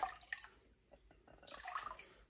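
Water poured from a glass bowl splashing into an aquarium, tailing off within about half a second into a few faint drips.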